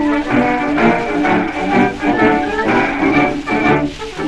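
German military brass band playing a march, heard from an early acoustic 78 rpm shellac recording made around 1910. Brass carries a lively, rhythmic melody over lower held notes.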